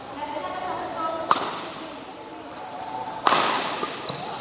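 Badminton racket strikes on a shuttlecock during a singles rally: two sharp hits about two seconds apart, the second louder and followed by a short rush of noise, over voices in the hall.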